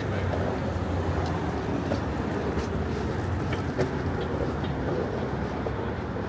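City street traffic: a steady rumble of cars and other vehicles, with a few faint scattered clicks.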